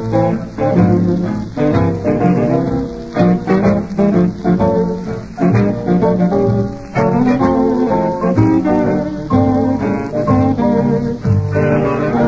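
Early-1930s dance orchestra playing an instrumental swing-style passage of a popular song, with no singing. The sound is old-record narrow, with little above the middle range.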